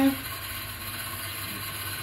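A steady low hum with a faint hiss as room background, no distinct events in it; a man's voice trails off right at the start.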